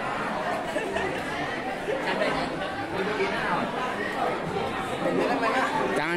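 Overlapping chatter of many teenage voices talking at once, steady throughout.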